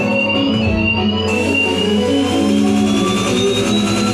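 Experimental live music: sustained, layered electric guitar and electronic drones, with a thin high tone gliding slowly upward and a hiss of noise swelling in about a second in.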